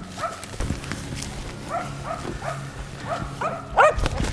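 Finnish spitz bark-pointing a shot capercaillie in cover, giving a steady string of short barks about two a second, loudest near the end, to mark where the bird lies.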